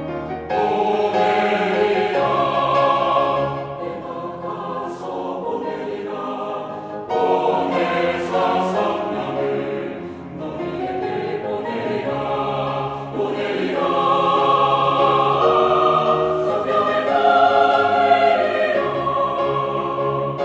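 Mixed church choir singing a Korean-language anthem, loud, with piano accompaniment.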